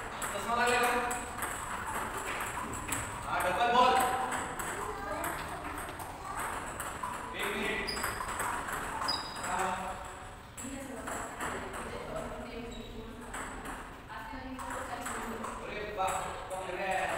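Table tennis rallies: the plastic ball repeatedly clicking off rubber paddles and bouncing on the tabletops, several tables' worth of hits overlapping.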